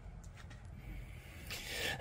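Faint rubbing and handling noise with a few light ticks, growing a little louder near the end.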